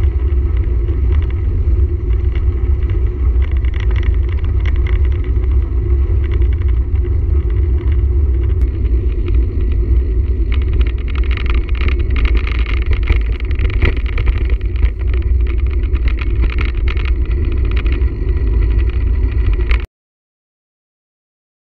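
Steady rumble of wind buffeting a moving camera's microphone, with tyre noise on a wet road, while riding a bicycle along a country lane. It cuts off suddenly near the end.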